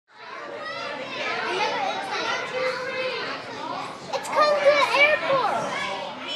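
A crowd of young children talking and calling out over one another, fading in at the start. A few high voices rise louder about four seconds in.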